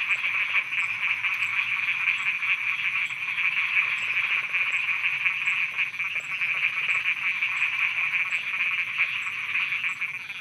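Dense chorus of many frogs croaking, a steady mass of overlapping calls, with a faint high pip repeating about every half second above it.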